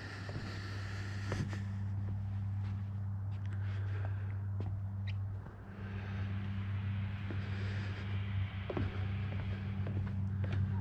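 Footsteps on a boardwalk deck over a steady low hum that drops out briefly about halfway through.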